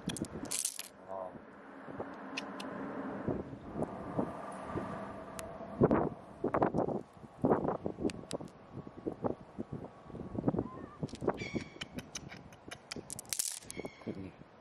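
A hand sloshing and scraping through shallow water over sand, with a run of sharp, irregular clicks as smooth glassy stones knock together in the palm.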